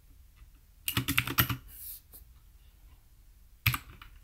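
Computer keyboard typing: a quick run of keystrokes about a second in, then another short run near the end, with quiet in between.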